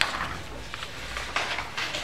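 Sheets of animation drawing paper being handled and slid over one another, a soft papery rustle with a few light taps.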